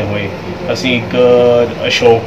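A man speaking, drawing out one long vowel near the end, over a steady low hum.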